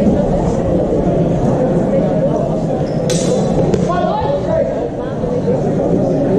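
Steel training swords clashing once, sharply, about three seconds in, with a short metallic ring and a second lighter clash just after, over steady murmur of voices in a large hall.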